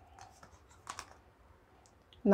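Faint clicks and light slaps of tarot cards being drawn off a deck and laid on a table, a few short taps with the strongest about a second in.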